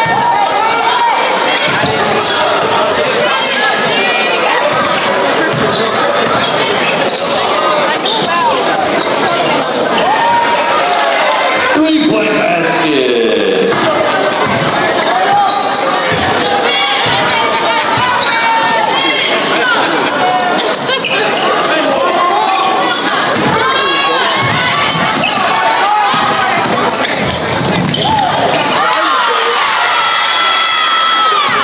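Live basketball game sound in a gym: a basketball being dribbled on the hardwood floor amid the voices of players and spectators, echoing in the hall.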